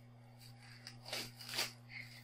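Clear plastic wrap crinkling as it is peeled off a wrapped roll, in a few short bursts, the loudest about a second in and again a little later, over a faint steady hum.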